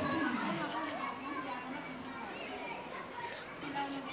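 Several voices, including children's, talking and calling over one another: a general background babble with no single clear talker.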